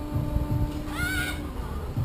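A rider's brief high-pitched whimper, rising then falling in pitch, about a second in, over a steady low hum and rumble.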